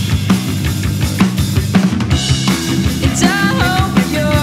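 A rock band playing live: a drum kit with kick and snare hits, electric bass and electric guitar.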